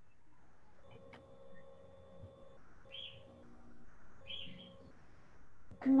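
Faint chirping calls in the background, two short high ones about a second and a half apart, with fainter pitched tones between them; a voice speaks a word at the very end.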